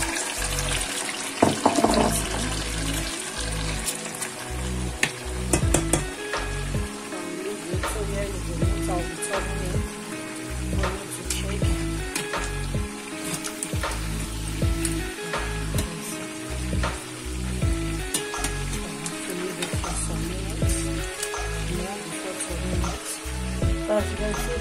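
Chicken pieces deep-frying in a pan of hot oil, sizzling with scattered crackles, with a brief louder burst about a second and a half in. Background music with a steady beat plays throughout.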